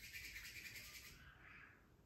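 Palms rubbed briskly together, a fast dry rasping hiss, fading out about a second and a half in as the hands stop and move down over the eyes.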